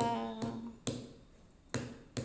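A woman's held final sung note fades out, then sharp percussive strikes keep time, about one every 0.9 seconds, twice here.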